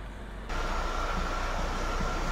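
Steady interior running noise of a test vehicle: a low rumble under an even hiss, which steps up in level about half a second in, where a steady high whine joins it.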